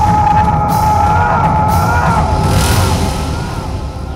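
Dramatic film background score: a held, wavering high melody line over a dense low accompaniment, easing off near the end.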